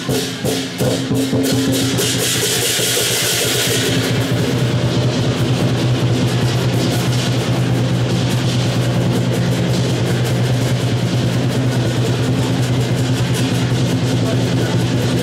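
Lion dance percussion: a large Chinese drum beaten fast and loud with clashing cymbals. A bright burst of cymbal crashes comes about two to four seconds in, then a dense, rapid drum roll runs on.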